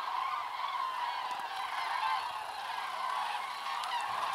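A large flock of common cranes calling in flight overhead, many overlapping calls blending into a steady, continuous chorus.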